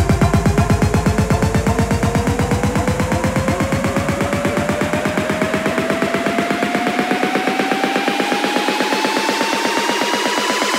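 Bass house track in a build-up: a synth sweep rises steadily in pitch over a fast, even pulsing rhythm, while the bass fades out from about four seconds in.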